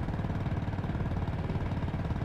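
Motorcycle engine running steadily while riding, an even, rapid pulse with a haze of noise above it.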